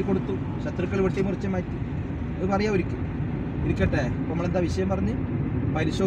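Talking over the steady low rumble of a Kia car driving on the road, heard from inside the cabin.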